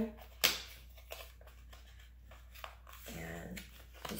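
Handling noise as a boxed makeup collection is reached for and picked up: one sharp knock about half a second in, then a few faint clicks and rustles.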